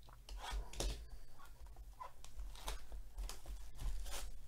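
Clear plastic shrink wrap being pulled and torn off a trading card hobby box by hand: a string of short crinkling rustles, over a faint steady low hum.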